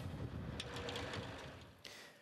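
A MAZ snow-clearing truck with plough and grit spreader running: a steady mechanical clatter over engine noise, fading out just before the end.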